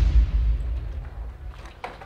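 A deep cinematic boom sound effect, a dramatic hit that dies away over about a second and a half.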